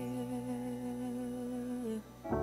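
Worship song playing: one long sung note held over a steady low keyboard tone. The note dips slightly in pitch and stops near the end.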